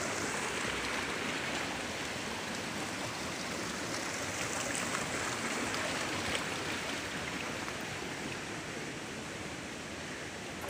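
Mountain water rushing along a narrow stone-lined channel: a steady, even rush of flowing water, a little fainter near the end.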